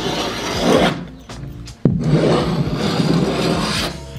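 A Linbide tungsten carbide scraper with a 50 mm blade dragged along the painted joint between wall and skirting board, in two long scraping strokes. The second stroke starts with a sharp click just under two seconds in. The blade is breaking the paint seal and scraping out old gap filler and paint.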